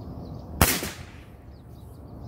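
A single shot from an early-1950s Sheridan Silver Streak .20 calibre multi-pump pneumatic air rifle, charged with six pumps: one sharp crack about half a second in that dies away quickly.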